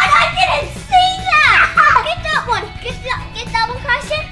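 Young children's voices calling out in high, rising and falling cries without clear words, over background music.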